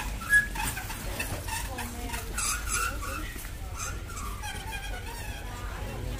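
Warehouse-store ambience: indistinct voices of other shoppers over a low steady hum, with scattered light clicks and rattles from a pushed shopping trolley.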